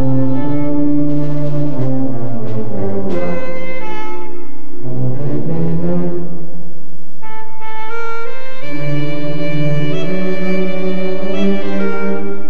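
Slow, solemn brass music: long held chords that change every second or two, with no drums.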